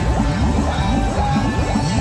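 Reel 'Em In! slot machine playing its bonus-round music, with a run of quick rising sweeps while the fish on the reels are tallied into the scores.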